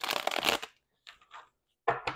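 A deck of tarot cards being riffle-shuffled and bridged by hand: a half-second riffle at the start, a few faint card flicks, then another short riffle near the end.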